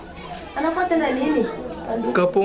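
Only speech: a person talking.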